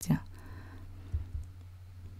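Two soft, low computer-mouse clicks about a quarter second apart, a little over a second in, advancing the slideshow. They sit over a steady low electrical hum.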